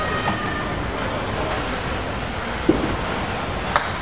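Candlepin bowling alley din: a steady rumble of balls rolling down the wooden lanes, with a thud about two and a half seconds in and a sharp knock near the end.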